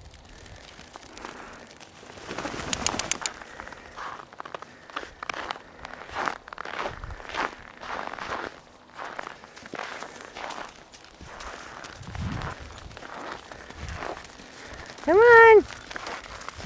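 Footsteps crunching irregularly on packed snow, then one loud, arching bleat from a Nubian goat near the end.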